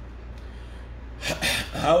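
A man draws a sharp, audible breath about a second in and starts to speak. Before that there is only a low, steady hum.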